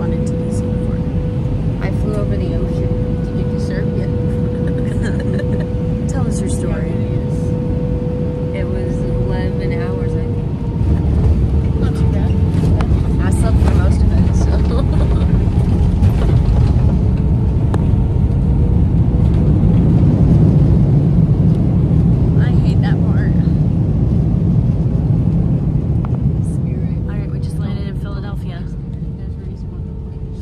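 Airliner cabin noise: jet engines running with a dense low rumble and a steady held tone. The sound grows louder about ten seconds in and eases off near the end.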